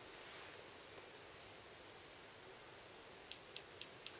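Near silence, then late on a Vernier Go Direct Motion Detector's ultrasonic transducer starts clicking faintly and regularly, about four clicks a second, as the sensor connects and begins taking position readings.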